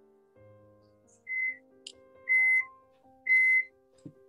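Soft piano background music, with three short, high, steady tones at one pitch about a second apart standing out loudest over it.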